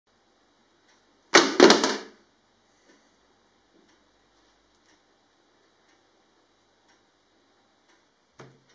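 A short, loud rush of noise in three quick pulses about a second and a half in, followed by a few faint scattered ticks.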